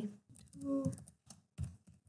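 Typing on a computer keyboard: a quick, irregular run of key clicks as a word is typed in.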